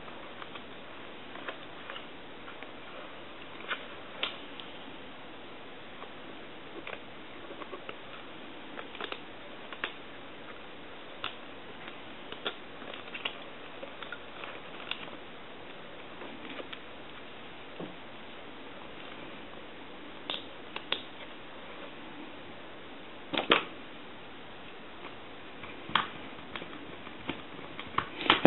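Scattered light clicks and taps of a telephone's circuit board being handled and fitted back into its housing, over a faint steady hiss, with a louder knock a few seconds before the end.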